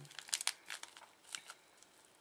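Wrapped tea-bag sachets crinkling as they are handled, a few short rustles in the first second and a half that then die away.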